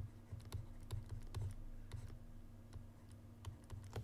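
Irregular light taps and clicks of a stylus writing on a pen tablet, over a steady low electrical hum.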